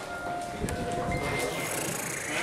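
Hotel elevator rumbling low, with a few short steady tones at different pitches sounding one after another.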